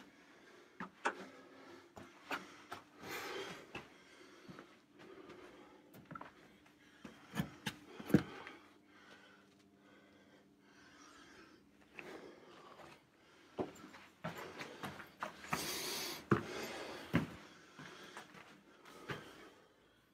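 Scattered scuffs, knocks and rustling of someone moving through a narrow rock-cut cave passage, with a few louder scraping bursts, the loudest about sixteen seconds in.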